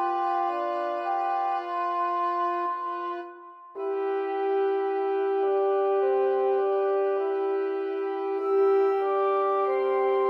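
Woodwind quintet of flute, oboe, clarinet, French horn and bassoon playing a slow, soft passage of held notes. The sound thins out and briefly drops away about three and a half seconds in, then a new phrase comes in with sustained chords.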